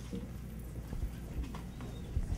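Handling noise from a handheld corded microphone as it is worked and passed from hand to hand: scattered soft knocks and rubs over a low hum.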